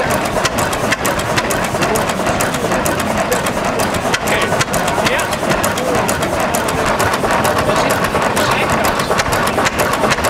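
Vintage single-cylinder stationary engine running steadily, with a continual fine clicking from its mechanism.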